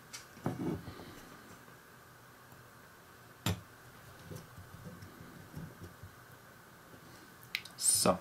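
Handling noise from a scale-model engine-block assembly being picked up and turned in the hand on a cutting mat: a short rustle about half a second in, one sharp click about three and a half seconds in, then a few soft taps.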